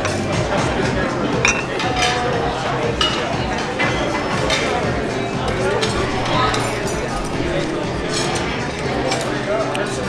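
Busy restaurant dining room: background chatter and music, with dishes and cutlery clinking and several sharp clinks in the first half.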